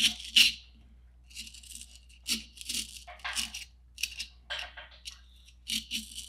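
An X-Acto knife cutting and picking small pieces out of cured expanding-foam gap filler: a series of short scratchy cuts, roughly two a second, at uneven intervals.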